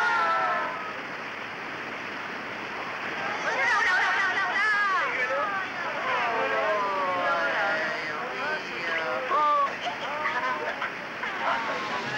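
Cartoon characters' voices crying out in wordless, gliding exclamations, over a steady rushing noise, as they are carried down through an opening heart valve.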